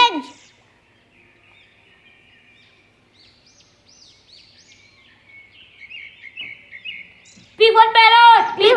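Birds chirping and twittering faintly in quick short calls, quieter at first and louder from about five seconds in.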